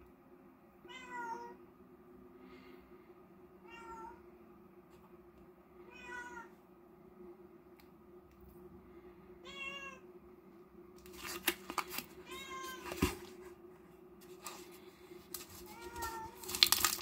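A domestic cat meowing repeatedly, about six short rising-and-falling meows spaced two to three seconds apart. In the last few seconds there is crackling and clicking from plastic packaging being handled.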